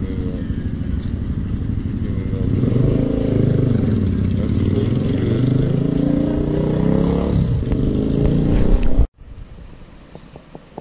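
A motor runs over a steady low rumble, its pitch dipping and rising again in the middle. The sound cuts off suddenly about nine seconds in.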